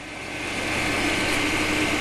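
A steady, even hiss of background noise that slowly grows louder.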